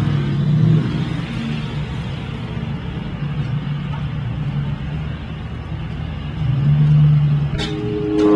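A motor vehicle engine running in a low, steady rumble. It grows louder for about a second near the end, then cuts off suddenly.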